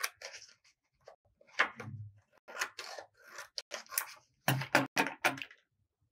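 Scissors snipping through a sheet of coloured craft paper in a run of short, irregular cuts, with paper rustling; the sounds stop about five and a half seconds in.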